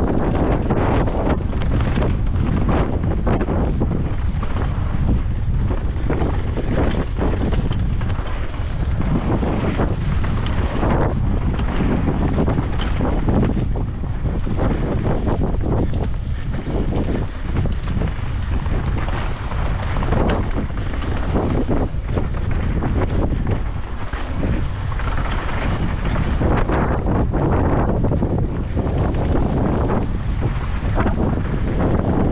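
Wind buffeting the microphone of a camera on a mountain bike riding down a dirt trail, a steady low rush mixed with the tyres rolling over the dirt and the bike clattering on bumps.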